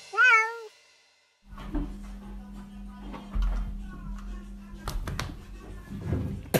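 A single cat meow, about half a second long, bending up and down in pitch. After a second of silence there is a faint low room hum with a few sharp knocks about five seconds in.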